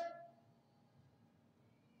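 Near silence: room tone, with the last spoken word fading out in the room's echo just at the start.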